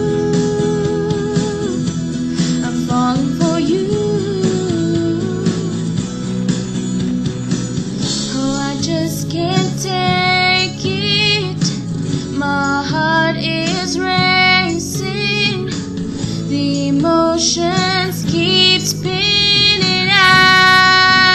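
Music: a pop song played with guitar accompaniment. A female voice sings with vibrato from about eight seconds in.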